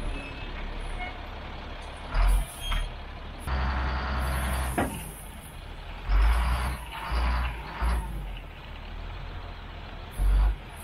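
Ford F-750 dump truck running while its bed tips up and crushed limestone slides out of the back onto the ditch, with several loud bursts of rumble and rattle about two seconds in and again between about six and eight seconds.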